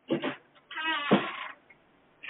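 Two short bursts, then a drawn-out vocal cry of about a second with a wavering pitch.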